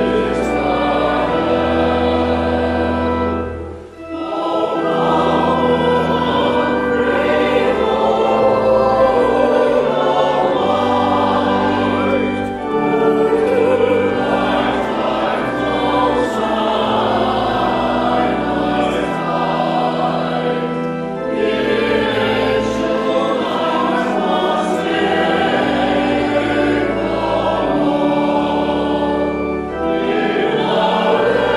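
Small mixed church choir singing a hymn in slow, sustained phrases over organ accompaniment, with a brief drop in the sound about four seconds in between phrases.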